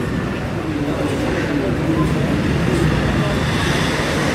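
Murmur of a crowd of people talking over a steady low rumble of street traffic.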